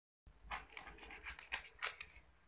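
A brief dead silence, then a quick run of light papery rustles and taps: paper soccer-ball cutouts being picked up by hand off a game board.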